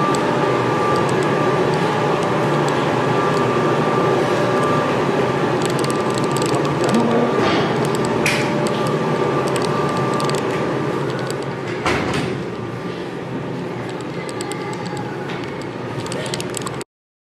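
Steady mechanical running noise with a constant hum from crematorium machinery, easing off over the last few seconds. A few clicks and knocks fall around the middle, and there is a sharp knock about twelve seconds in.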